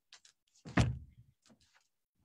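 A single solid knock or thump about a second in, with a few fainter clicks and rustles around it: the sound of someone fetching a book off-camera.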